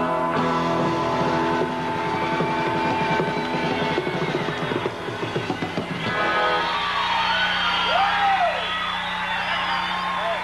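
Live country band with acoustic guitar playing the closing strummed bars of a song, ending about six and a half seconds in. The audience then cheers and whistles.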